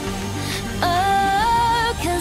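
Pop song playing, with bass under an electronic backing. About a second in, a high note slides up and is held.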